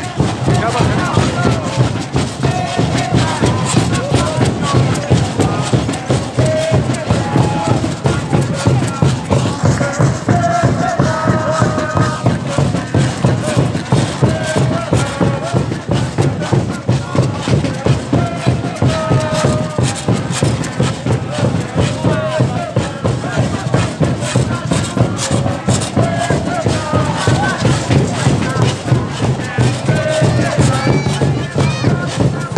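Banda de congo playing: a steady rhythm of hand drums and casaca scrapers runs throughout, with a group of women singing over it.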